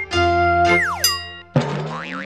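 Short electronic station-ident jingle for the GTV logo: a held synth chord, a cartoonish tone sliding quickly downward a little under a second in, then a fresh chord with a wobbling pitch entering near the end.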